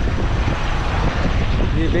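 Steady road and engine noise inside a moving Tata Winger van: a continuous rushing hiss over a low rumble.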